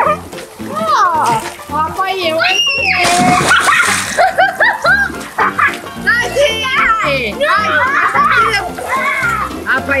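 Children shrieking and calling out while playing in a swimming pool, with water splashing. Background music with a steady beat runs underneath.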